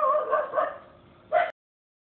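A high, wavering whine fades away over about a second. A short sound follows, and then the audio cuts off abruptly to dead silence.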